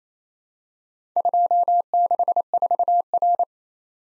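Morse code practice tone at one steady pitch, keyed on and off in dots and dashes, starting about a second in and lasting a little over two seconds. It sends the four-character combination 2, 6, 4, R, which is then spoken.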